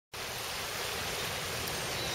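A full river running, a steady rush of flowing water.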